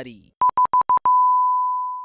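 Electronic beep sound effect: four short, evenly spaced beeps at one steady pitch, then a single long beep at the same pitch that fades out.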